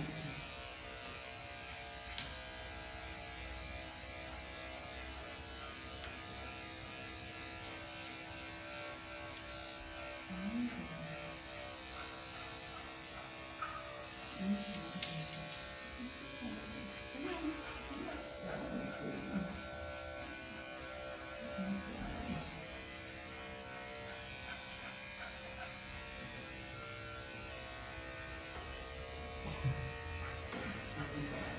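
Corded electric dog-grooming clippers running steadily, shaving the matted fur off a shih tzu's belly.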